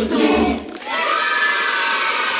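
A pop song for children ends about half a second in, then a studio audience of children cheers and shouts.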